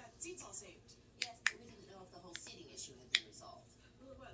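Knuckles being cracked by hands pressed together with the fingers interlaced: four sharp pops over about two seconds, the last the loudest, with faint television dialogue underneath.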